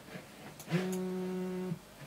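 BlackBerry Z10 smartphone vibrating against the desk for about a second: a steady low buzz that starts and stops abruptly, the phone's alert for an incoming message.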